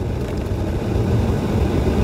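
Steady low rumble of tyre and road noise inside the cab of a moving Ford F-150 Lightning all-electric pickup, with no engine note.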